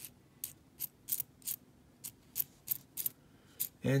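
Copper pennies from an opened roll clicking against one another as a fingertip works down the row, tipping them over one by one on a coin mat: about a dozen light, irregular clicks.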